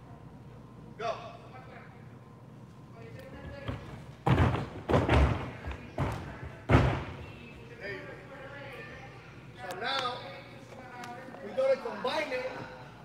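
A run of about five heavy thuds as a gymnast's hands and feet strike a carpeted sprung floor during a pass of front bounds, between about four and seven seconds in.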